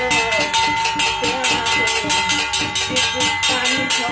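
Brass plates beaten rapidly with thin sticks in a steady rhythm of about five strikes a second, each stroke ringing on in a bright metallic tone. A voice chants over the beating.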